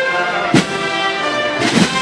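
Brass band playing a processional march: held brass chords, punctuated by drum strikes about half a second in and again near the end.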